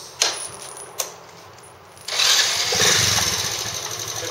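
Honda Magna 50's single-cylinder four-stroke engine, fitted with a Daytona bore-up aluminium cylinder kit, started on the electric starter: two light clicks in the first second, then about two seconds in it cranks, catches at once and keeps running.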